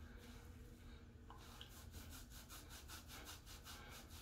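Faint, quickly repeated rubbing of fingers working a thin co-wash into a wet beard.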